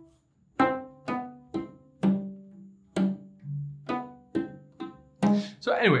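Cello notes sounded by the left hand alone: fingers hammering down onto the strings and plucking off them sideways, giving a series of short ringing notes at about two a second. Each note starts cleanly, which is the sound of a strong, well-articulated left hand.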